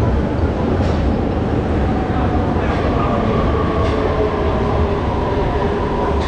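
Beijing subway train pulling into the platform: a steady low rumble, with several whining tones coming in about halfway.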